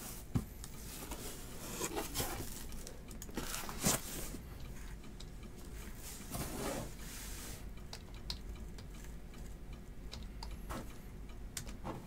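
Faint handling noises from trading-card boxes being moved about on a table: a few light taps and clicks, and brief soft rustles of cardboard and wrappers.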